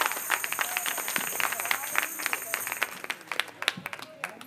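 A church choir and congregation applauding with hand claps, the clapping thinning out and fading toward the end.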